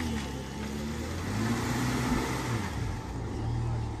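Great Wall Poer pickup's engine revving unevenly, its pitch rising and falling, as the truck labours up a muddy slope and makes little headway.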